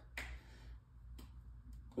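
A few faint, sharp clicks in a quiet room: one just after the start, then a few more around a second in and near the end.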